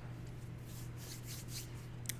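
Quiet room tone: a steady low electrical hum, with faint soft rustling about a second in.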